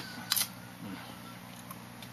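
Two quick sharp clicks about a third of a second in, over a faint steady low hum.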